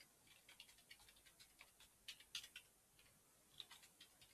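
Faint, irregular clicking of computer keyboard keys as commands are typed, with a quick run of louder keystrokes about two seconds in.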